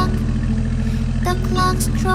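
Truck engine running steadily as a low, fast-pulsing rumble. A children's song melody comes back in over it about halfway through.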